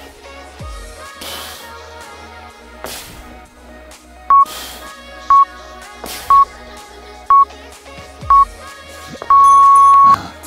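Workout interval timer beeping a countdown: five short beeps a second apart, then one long beep near the end marking the start of the next exercise. Background music plays underneath.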